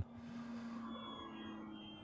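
Faint whine of a distant electric RC airplane's motor and propeller, a thin high tone that slowly falls in pitch over a faint steady hum.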